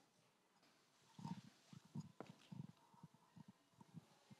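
Near silence in a lecture hall. After about a second come faint scattered low shuffles and soft knocks from the seated audience, with one sharper click a little past two seconds.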